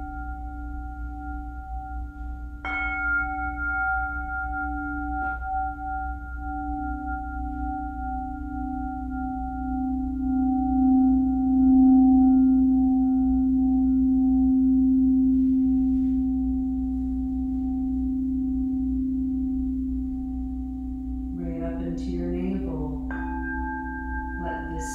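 Quartz crystal singing bowls ringing in long, steady overlapping tones. Two strikes a few seconds in, then a low bowl tone swells to its loudest about halfway through and slowly eases off, as when a bowl is played around its rim. New tones come in near the end.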